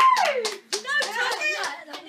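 Young children clapping and laughing, with one rising-and-falling shout at the start and a run of quick bursts of laughter about a second in; the sound dies away near the end.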